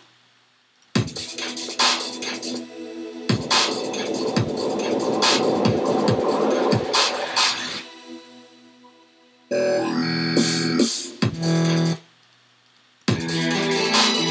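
Dubstep track with synths and drum hits playing back from a DAW in stop-start snippets. There is a short burst about a second in, then a longer passage of about four seconds, then two brief bursts, then a restart near the end, each cutting off suddenly.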